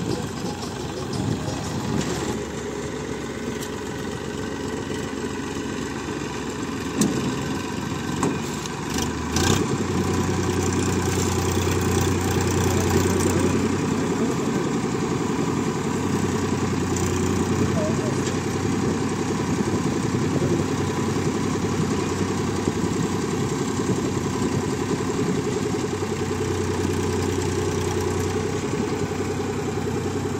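Diesel engine of a Massey Ferguson tractor running a tractor-mounted Satnam 650 mini combine harvester. About a third of the way in, after a short knock, the engine note rises and settles into a louder, steady drone.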